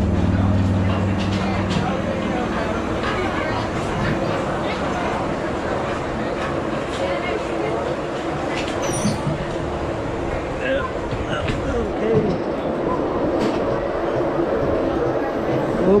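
Alpine coaster sled creeping forward along its steel rails out of the start station: a steady mechanical rumble and hum with scattered clicks and rattles from the track.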